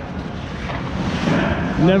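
Steady, noisy ice-rink background during a hockey game, with no distinct single event. A man's voice starts near the end.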